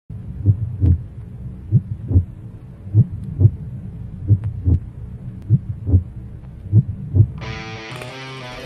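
Heartbeat sound effect: six slow double thumps in a lub-dub rhythm, about one beat every second and a quarter, over a low drone. Near the end it gives way to guitar music.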